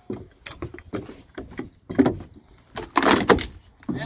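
A steel deck wrecker tool prying up old deck boards: scattered knocks as its head strikes and bites the wood, then a longer creaking, cracking noise about three seconds in as a rotten board gives way under the lever.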